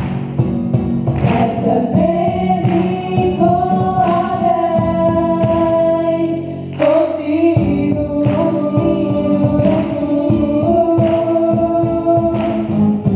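A group of young voices singing a song through microphones over strummed acoustic guitar and a cajón beat, with long held notes.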